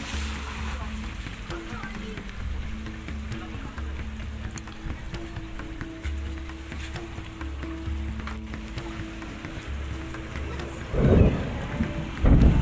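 Light rain falling on a river's surface, a steady hiss of drizzle, with a low hum underneath. A brief louder sound comes near the end.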